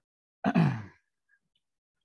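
A man's short sigh: one breathy exhale with a voiced tone that falls in pitch, lasting about half a second.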